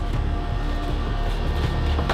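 Background music with a steady low bass.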